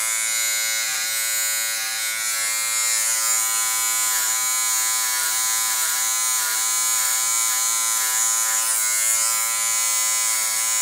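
Small Wahl electric hair clipper running steadily, buzzing at an even pitch as it cuts short hair at the nape. Its pitch sags slightly now and then as the blades take up hair.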